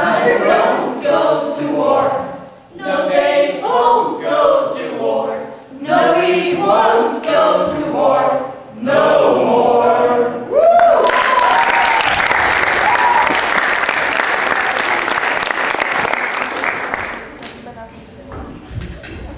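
A group of voices singing together without accompaniment. About eleven seconds in, the song ends and audience applause takes over for about six seconds before fading away.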